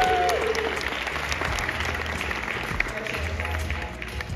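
Audience applauding in a large hall, the clapping thinning out and dying down over the few seconds, with music playing underneath.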